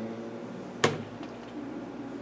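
A single sharp click a little under a second in, over a steady low hum of room noise.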